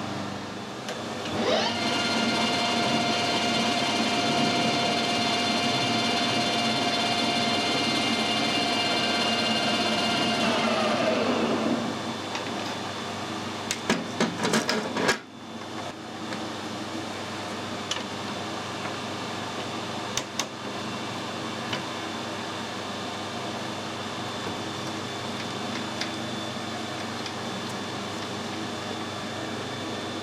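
Metal lathe started up, running with a steady gear whine, then switched off about ten seconds in and winding down with falling pitch. A few clicks and knocks follow, then a quieter steady workshop hum.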